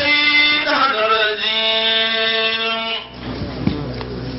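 A man chanting in a melodic, drawn-out style with long held notes, which stops about three seconds in. A quieter stretch with a low hum follows.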